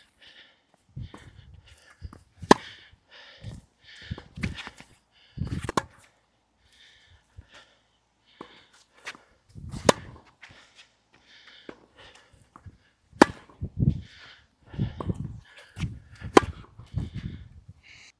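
Tennis rally on a hard court: sharp pops of a racquet strung with Tourna Big Hitter Silver 7 Tour, a seven-sided polyester string, striking the ball about every three seconds, with fainter hits and ball bounces in between.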